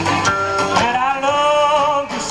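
Live rockabilly band playing, with guitar to the fore; a long note is held through the second half.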